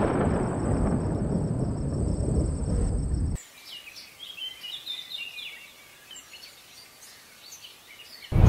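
A loud, low rumble like thunder for about three and a half seconds, cut off suddenly, followed by faint birdsong of short, quick chirps.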